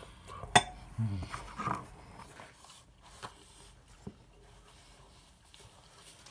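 Someone eating with a metal fork: one sharp clink about half a second in, then chewing and a short low hum, with a couple of faint clicks later and a quiet stretch near the end.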